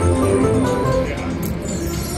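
Video slot machine playing its win music, a steady run of electronic notes, while the credit meter counts up the bonus win.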